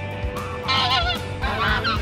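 Geese honking in flight: a run of loud calls starting about half a second in, over faint background music.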